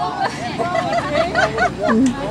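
Voices only: several people talking at once in the background, with no other distinct sound.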